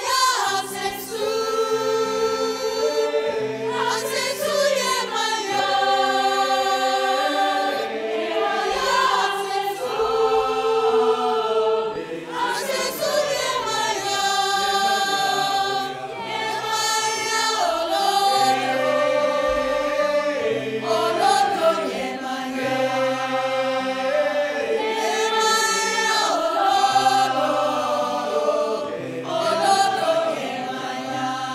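Large mixed choir singing a chant based on traditional Yoruba chants, in sustained chords that change every few seconds.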